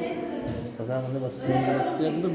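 A man's voice speaking to the camera in Yakut (Sakha), with some drawn-out vowels.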